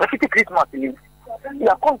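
A person talking in two short stretches with a brief pause between, over a steady electrical mains hum.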